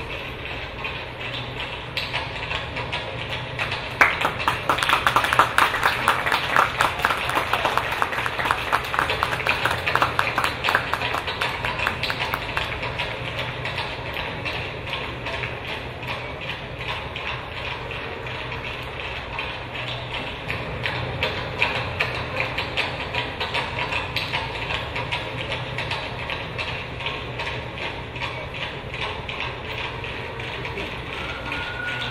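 Audience clapping, starting suddenly about four seconds in, loudest for the next several seconds, then carrying on more thinly.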